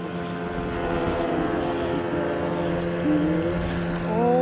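An engine running steadily, its pitch wavering a little.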